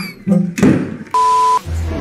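A steady electronic beep, one flat tone about half a second long, starting a little past one second in, the kind of bleep added in editing. A brief rush of noise comes just before it.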